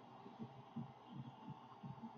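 Near silence with a few faint, soft low thuds from trading cards being handled, set down on a stack and picked up by hand.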